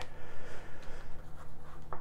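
Soft rubbing and scraping: handling noise from a hand on a book sliding across a wooden desk and a lavalier microphone cable being shifted.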